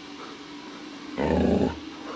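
Afghan Hound puppy giving one loud bark, about half a second long, a little past a second in: a territorial warning.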